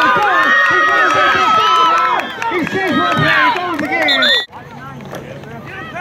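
Sideline crowd yelling and cheering, many voices over one another, with one voice holding a long high shout. About four and a half seconds in the sound cuts off abruptly to a much quieter background with a low hum.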